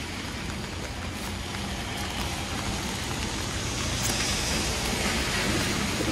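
Steady rain falling, with the hiss of city traffic on wet streets underneath, building slightly over the few seconds.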